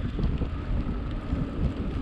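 Wind buffeting the microphone of a camera on a moving bicycle: an uneven low rumble.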